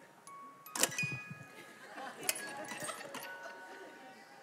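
Hand-cranked jack-in-the-box: the last notes of its wind-up tune, then the lid springs open with a sharp clack about a second in as the jack pops out.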